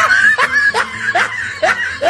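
A laugh-track sound effect: one voice laughing in a rhythmic run of short rising bursts, about two to three a second, marking the end of a joke.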